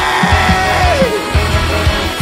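An emo / math-rock band recording: full band with drums keeping a steady beat and no singing. A held melody note slides down in pitch a little past a second in.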